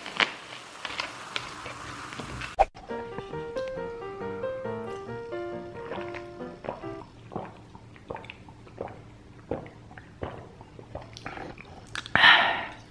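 Coca-Cola fizzing in a glass: a fine crackling hiss of bursting bubbles, close up. About two and a half seconds in it cuts off suddenly and melodic background music takes over.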